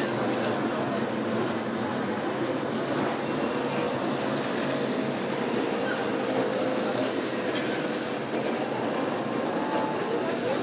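Steady din of busy street traffic: motor vehicles running, with no single event standing out.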